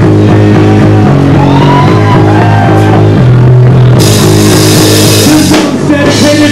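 Punk band playing loud live: electric guitar and bass chords over a drum kit. About four seconds in the cymbals come crashing in.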